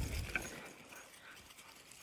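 A pause in a man's spoken narration: his voice trails off at the start, then only faint background noise with one small click, likely a breath or mouth sound.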